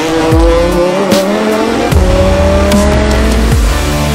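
Race car engine note rising steadily in pitch, over electronic music with a heavy beat.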